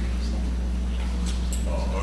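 Steady low electrical hum with faint, indistinct voices of people talking quietly away from the microphone.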